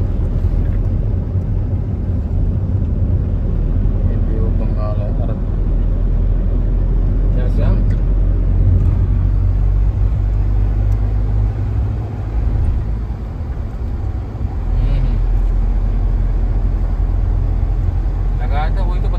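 Car travelling at road speed, heard from inside the cabin: a steady low rumble of engine and tyre noise that eases a little past the middle and then returns.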